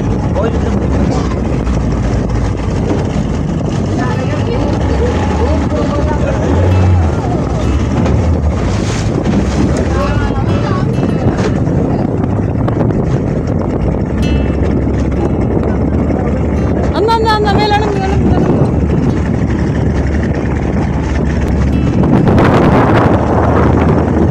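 A small motorboat's engine runs steadily under way, with wind buffeting the microphone and the hull slapping through choppy water.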